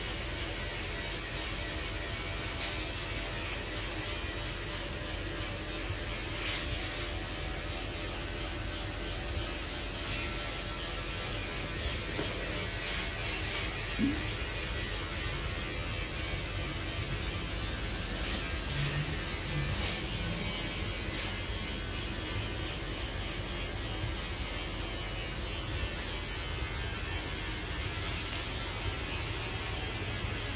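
Straight razor scraping stubble off a man's cheek and chin, shaving against the grain, over a steady low electrical hum.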